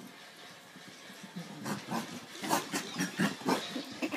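A Welsh Corgi making a quick run of short, breathy noises as she races around in a playful frenzy, starting about a second and a half in.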